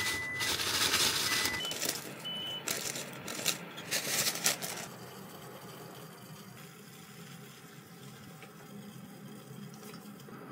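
Plastic bag crinkling and rustling as dried wakame seaweed is shaken out of it into a stainless saucepan, with a few short high beeps in the first three seconds. After about five seconds it turns quieter, leaving a low steady hum and faint handling sounds.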